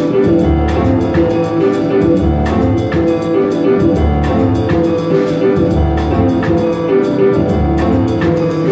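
Small jazz band playing live: drum kit with frequent cymbal strokes and bass notes about once a second under held melody notes.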